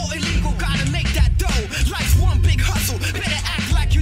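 Hip hop track playing: a rapped vocal over a beat with heavy, continuous bass and drum hits.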